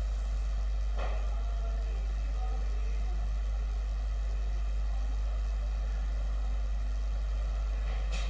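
Steady low hum with a faint hiss underneath; no other event stands out. It is the background of the broadcast audio during a gap between speakers.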